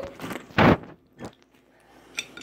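Someone taking a bite of homemade waffle close to the microphone: one short loud crunch about half a second in, then a fainter one.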